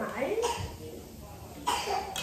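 A woman coughs once, a short sudden cough about two-thirds of the way in, after some speech fades out.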